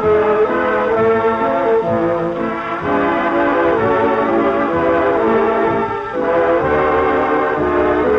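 Swing-era dance orchestra playing an instrumental passage, with brass carrying sustained melody notes. It is an old 1942 recording with dull, cut-off treble, and there is a brief break in the phrase about six seconds in.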